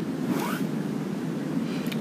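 Steady hiss of background noise on the recording microphone in a gap between words, with a faint short rising sound about half a second in.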